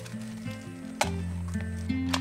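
Background music with a soft pitched melody over a faint sizzle from a buckwheat crepe warming in a frying pan. A couple of sharp clicks come about a second in and near the end.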